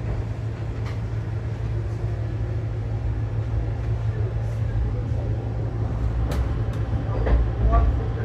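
Steady low rumble of a Vande Bharat electric multiple-unit train running along the track, heard inside the coach, with a couple of sharp clicks near the end.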